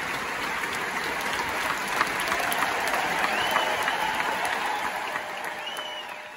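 Large concert-hall audience applauding, a dense steady clapping that fades away near the end.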